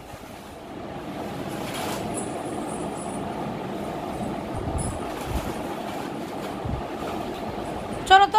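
Plastic wheels of a toy dump truck rolling on a concrete floor: a steady rumbling rattle with a few faint knocks.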